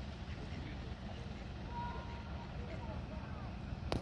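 Outdoor ambience: faint distant voices over a low, steady rumble, with one sharp click near the end.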